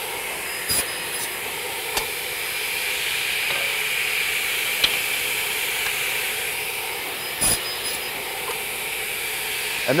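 A steady hissing noise of running shop machinery, broken by a few short knocks: one about a second in, one at two seconds and one near the end.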